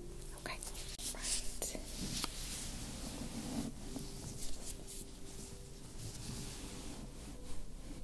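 Close soft rubbing and rustling of a thick waffle-knit cotton blanket draped over the microphone, with a few light scratchy touches. It is busiest in the first two or three seconds, then quieter.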